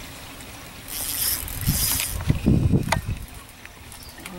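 A spinning fishing reel being cranked while a hooked bass pulls on the bent rod, giving a hissing whir for about a second. Low muffled rumbles follow, with a sharp click near the end.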